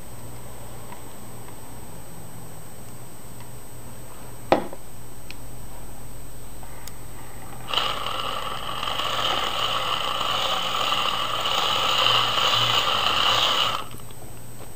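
Hand-cranked 500-volt dynamo of a vintage 'Wee' Megger insulation tester whirring steadily for about six seconds, starting with a clack about eight seconds in and stopping abruptly near the end, as it charges an electrolytic capacitor under test. A single sharp knock comes about four and a half seconds in.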